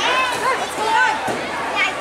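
High-pitched young voices shouting and calling out, several overlapping.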